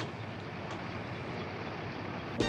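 Steady street traffic noise with a low hum. A short click at the very start as a wooden door is pushed open, and a fainter click a little later.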